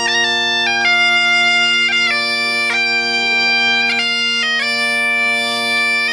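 Galician bagpipe (gaita) playing a slow tune of held notes over a steady, unbroken drone.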